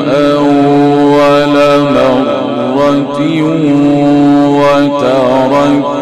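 A solo male voice reciting the Quran in the melodic mujawwad style, drawing out long, ornamented held notes, with short breaks about two and five seconds in.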